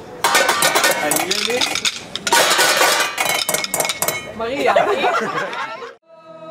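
A group drumming with wooden sticks on upturned metal cooking pots, pans and lids: a dense, loud clatter of metallic strikes, with voices joining in near the end.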